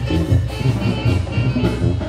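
Live banda playing an upbeat dance number: sousaphone bass and drums keep a steady beat under the brass, with no singing in this stretch.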